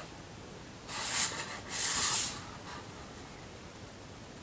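Hands handling a cardboard Blu-ray box set, giving two short scraping rustles about one and two seconds in.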